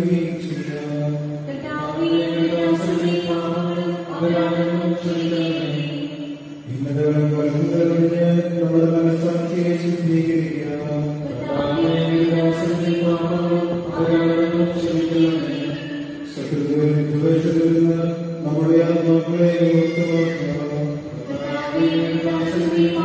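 Sung religious chant: voices holding long phrases on a near-steady low pitch, with short breaks between phrases every four to five seconds.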